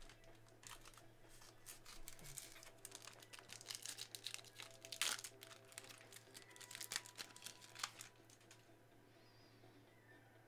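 Foil wrapper of a Bowman Chrome football card pack crinkling and tearing as it is ripped open by hand, a run of sharp crackles with the loudest rip about halfway through.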